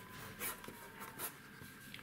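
Quiet scratching of a black pen tip drawing short lines on paper, a few separate strokes with the most marked ones about half a second in and just past a second in.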